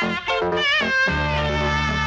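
1980s Tamil film song music: a high, wavering melody over short repeated low notes, then about a second in a held low chord takes over.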